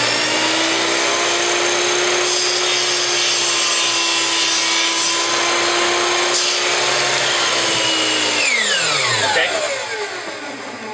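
Electric miter saw running at full speed as its blade is brought down through a small strip of wood for a 45-degree miter cut. The motor is switched off about eight and a half seconds in and winds down with a falling whine.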